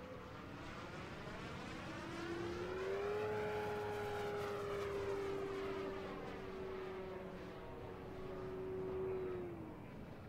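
Electric-powered RC warbird (86-inch Legend Hobby A-1 Skyraider) flying past overhead: a steady motor-and-propeller whine that rises in pitch about two seconds in, holds, and drops off just before the end. The sound swells as the plane passes.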